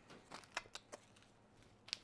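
Near silence broken by a few faint clicks and rustles of hands handling small packing items, mostly in the first second, with one brief tick just before the end.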